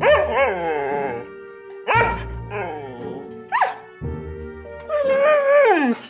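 A husky 'talking': four drawn-out, wavering howl-like calls. One is a short high yip about three and a half seconds in, and the last is the longest and slides down in pitch at the end. Steady background music plays underneath.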